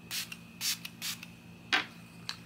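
A pump-mist bottle of makeup setting spray spritzed onto a face in several short hissing puffs, about half a second apart.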